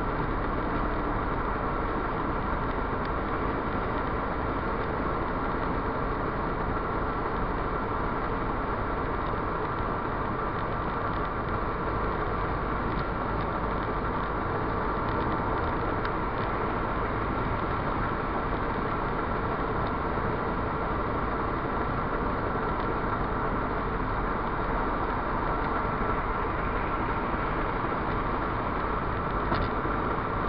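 Steady road noise inside a Ford Fiesta Mk6 cruising at motorway speed: tyre and wind noise with engine hum, unchanging at a constant level.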